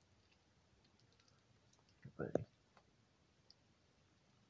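Baby striped skunk chewing at hard food pellets: faint, scattered small clicks and crunches.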